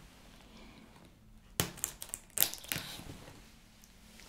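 Close-miked crackling and crunching of packing tape and cardboard on a taped black shipping box as it is handled, in two short bursts about a second and a half in and again around two and a half seconds in.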